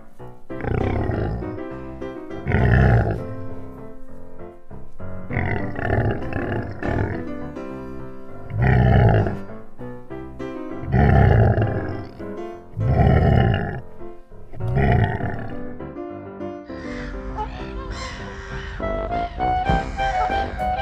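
Lion roaring, a series of deep calls about every two seconds over background music; the calls stop a few seconds before the end, leaving only the music.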